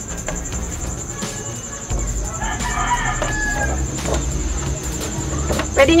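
A rooster crows once, about a second long, starting about two and a half seconds in, over a low intermittent hum.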